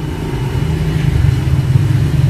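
A motor running steadily, heard as a low, even rumble.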